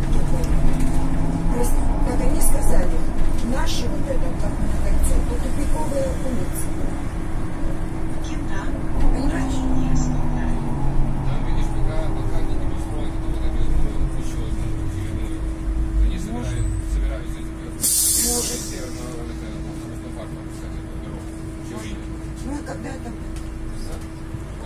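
Solaris Trollino II 15 AC trolleybus heard from inside, its electric traction motor whining up in pitch as it pulls away and falling as it slows, over a steady hum. A short burst of compressed-air hiss comes about eighteen seconds in, and the ride is quieter after it.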